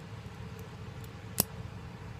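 A folding metal camp spoon being handled over an aluminium mess tin, with a single sharp metal click about one and a half seconds in, over a faint steady low hum.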